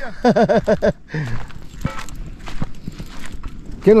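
Footsteps on dry, gravelly dirt with a few irregular light clicks, after a brief burst of a man's voice near the start.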